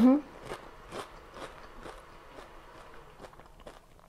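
A person chewing a mouthful of toast with a crunchy crust: faint crunches about twice a second, growing fainter toward the end.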